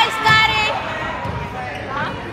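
Volleyball rally in a gym: dull thuds of the ball being played, under the voices of spectators, with one high held shout in the first half second.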